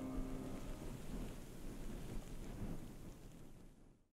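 The last held notes of the background music die away in the first half-second, leaving a low rumble and a steady hiss. These fade out to silence at the very end.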